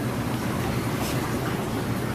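Steady rushing hiss with a low hum from a reef aquarium's pumps and circulating water.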